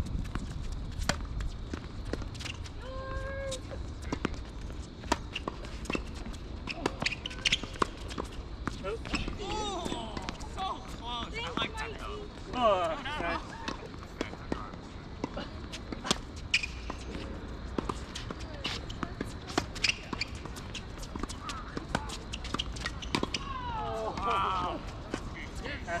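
Tennis balls struck by rackets and bouncing on a hard court during doubles play: sharp pops at irregular intervals through the rallies.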